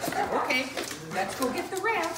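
Excited Great Danes whining, with high wavering calls about half a second in and a rising one near the end, mixed with a woman's voice talking to them.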